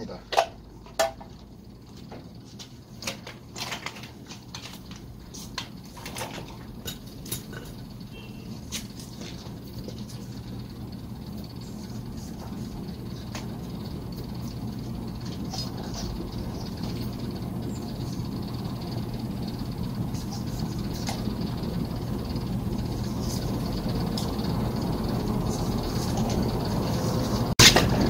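Small metal compressor parts clicking and knocking as they are handled and fitted, mostly in the first several seconds, over a steady low hum that grows gradually louder.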